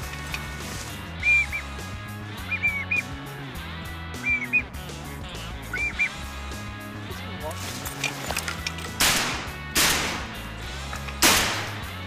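Duck quacking and calling over a background music bed with a steady low beat, as mallards circle. Near the end come three short, loud rushing bursts.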